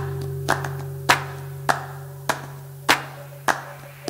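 Flamenco palmas: rhythmic handclaps about every 0.6 seconds over a low held note that slowly fades.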